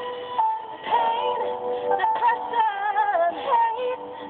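A recorded song with a woman's solo vocal, held notes giving way to sliding, ornamented runs about halfway through, over a steady sustained accompaniment, played back from a computer.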